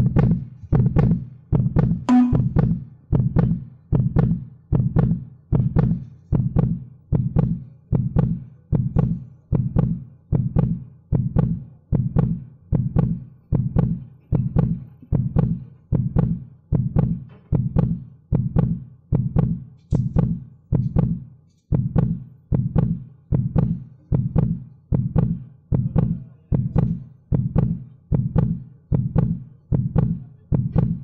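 A steady heartbeat-like beat of low thuds, about three every two seconds, on a book trailer's soundtrack played back through speakers.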